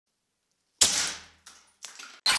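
Homemade PVC compressed-air cannon firing: one sudden sharp blast of released air about a second in, dying away over half a second, followed by two fainter short noises.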